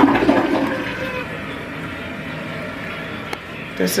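Toilet flushing: a loud rush of water that fades gradually as the bowl drains.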